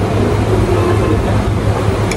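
Steady restaurant room noise: a continuous low hum under an even wash of sound, with faint indistinct voices.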